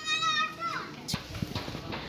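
A child's high-pitched, wavering squeal lasting under a second that drops in pitch as it ends, followed by a few faint knocks.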